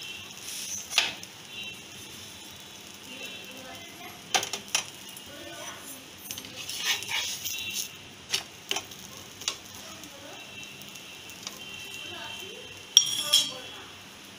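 A metal spatula clinking and scraping against a nonstick frying pan as a stuffed paratha is turned over, in scattered sharp knocks with the loudest cluster near the end, over a faint steady sizzle.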